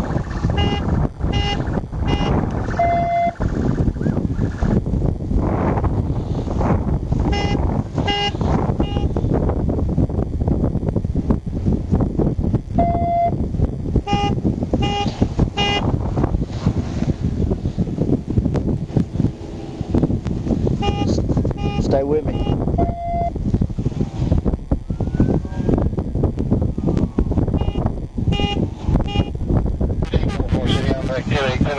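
Wind buffeting an outdoor microphone, a steady heavy rumble. Over it come short groups of thin electronic beeps every several seconds, and a single longer, lower beep about every ten seconds.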